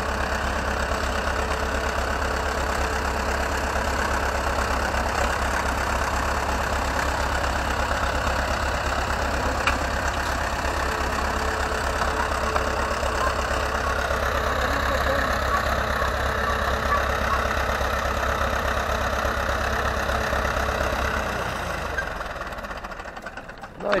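Ursus C-360 tractor's four-cylinder diesel engine running steadily under load as it tows a potato harvester down the loading ramps, with an even low rumble. The engine sound drops away near the end.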